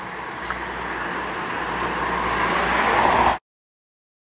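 Street traffic noise: a passing vehicle's sound growing steadily louder, then cut off suddenly about three and a half seconds in.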